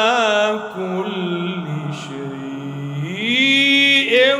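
A man reciting the Quran in melodic tajweed style into a microphone, drawing out long notes that waver in pitch. About three seconds in, his voice rises to a high held note.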